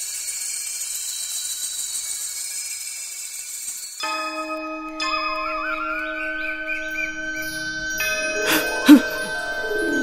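A high shimmering swoosh for about four seconds, then cartoon background music with sustained chime-like notes and a wavering melody line. A single sharp struck hit is the loudest moment, about nine seconds in.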